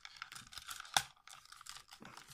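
Small plastic clicks and rattles from the leg parts of a Hasbro Titans Return Leader Class Sixshot figure as they are pushed and fitted together by hand, with one sharper click about a second in. The parts are being forced to line up and lock into place, which takes some effort.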